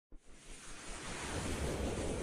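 Rising whoosh sound effect from an animated logo intro: a rushing swell of noise that builds in loudness.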